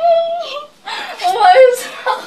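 Young women's stifled laughter and whimpering behind their hands: a held high-pitched vocal note, a brief break, then more wavering giggling.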